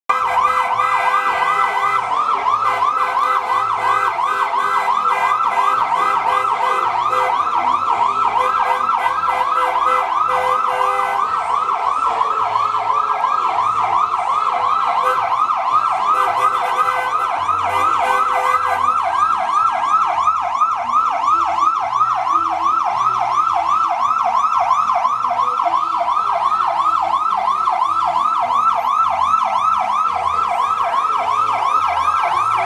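Emergency vehicle siren sounding loudly in a fast, repeating up-and-down yelp, several cycles a second, held steadily throughout.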